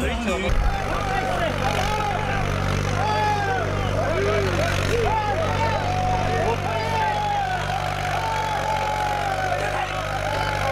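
A tractor engine runs steadily under a crowd of men shouting and calling together. Music cuts off about half a second in.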